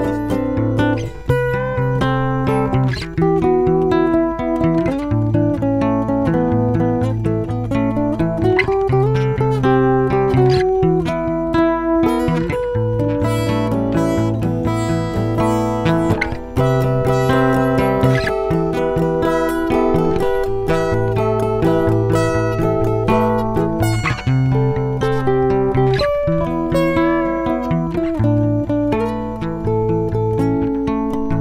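Acoustic guitars playing a song live, with chords and a repeating low bass line running steadily.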